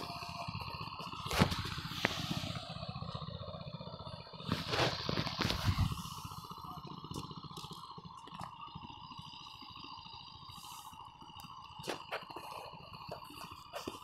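Outdoor ambience: a faint steady hum with scattered clicks and scrapes, and a louder rustling noise about five seconds in.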